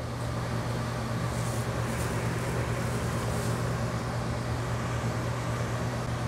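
Steady low hum and even rush of air from ventilation fans, running without change.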